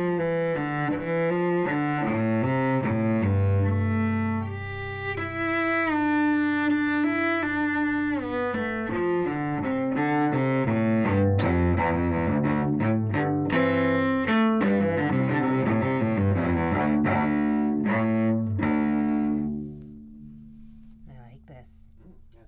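Solo cello playing a moving melodic passage, amplified through a Bartlett mini condenser mic mounted on the instrument with a foam block. Near the end the playing stops and a last low note rings on and fades.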